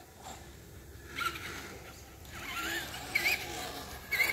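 Faint whine of an electric radio-controlled truck's motor at a distance, wavering up and down in pitch with the throttle, with a short hiss about a second in.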